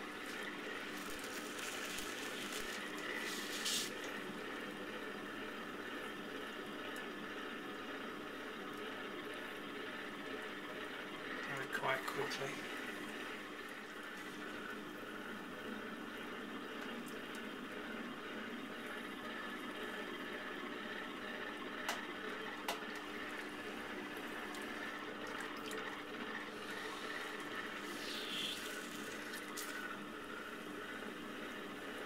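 Potter's wheel running with a steady hum while wet hands squelch and slosh against the spinning clay and slip, pulling up the walls of a tall vase.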